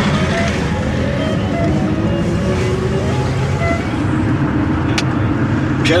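Steady low rumble of a car's engine and tyres heard from inside the cabin while driving, with a faint melodic line over it and a single click about five seconds in.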